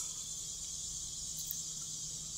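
Steady, high-pitched chorus of insects, a continuous drone with no breaks.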